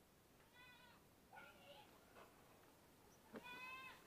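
Faint animal cries: a pitched call about half a second long, a shorter rougher call just after, and a second long call near the end.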